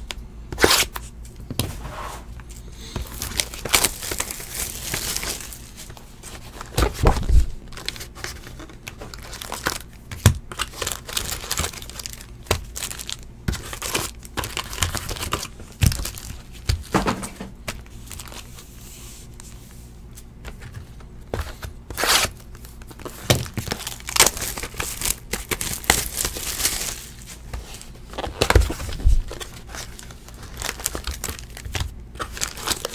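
Plastic shrink wrap being torn and peeled off sealed trading-card boxes and crumpled by hand, in irregular crackling rips. A couple of low thumps come as the boxes are handled.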